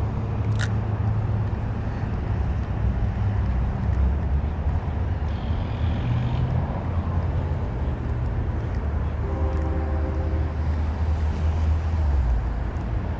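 Steady low rumble of road traffic, with a single sharp click just after the start and a vehicle's pitched engine drone for about a second and a half near the end.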